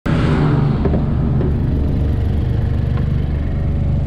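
Car engine idling steadily with the bonnet open, heard close to the engine bay, running a little higher for the first half second before settling.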